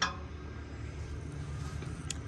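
A steady low hum with no distinct event in it.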